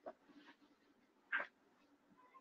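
A quiet room with one brief, faint cry of a three-month-old baby about a second and a half in.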